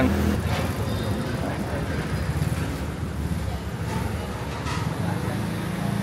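Steady street traffic noise from passing road vehicles, with a low hum underneath.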